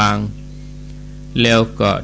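Steady electrical mains hum under a man's speech. It is heard plainly in the second-long pause between his words.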